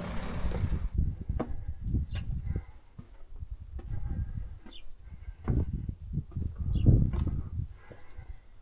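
Footsteps climbing concrete steps, heard as irregular low thuds and scuffs, with a few short high chirps. A hiss at the start cuts off about a second in.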